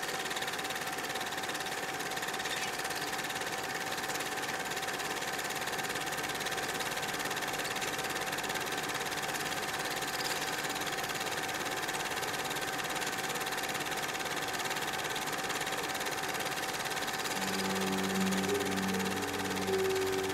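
A steady mechanical whirring with an even hiss and a constant high hum, unchanging throughout. A few low musical notes come in near the end.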